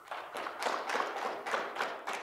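Audience applauding; the clapping builds over the first half second and then carries on steadily.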